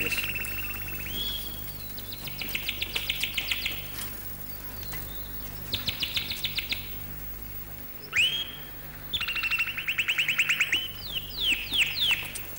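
Birdsong: four bouts of rapid, high trills, each about a second long, with short rising whistled notes between them near the end.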